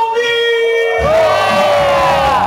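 A long held shout through a PA microphone, then a crowd cheering and shouting about a second in.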